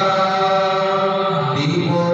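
Male Hindu priest chanting Sanskrit mantras into a microphone, in long held notes, with a short break and a change of pitch near the end.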